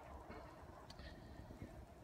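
Near silence: faint steady background noise.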